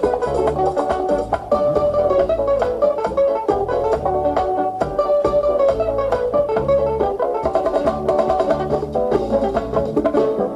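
Instrumental bachata music without singing: a lead guitar picks quick runs of notes over a pulsing bass line and steady percussion strokes.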